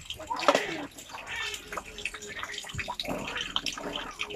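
Water splashing and trickling as a plastic cup is dipped into a shallow inflatable paddling pool and poured out over a child's head, with a louder splash about half a second in.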